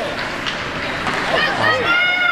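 Youth ice hockey play: a steady scrape of skates on ice with a few sharp stick and puck clacks, and high-pitched children's shouts starting about one and a half seconds in.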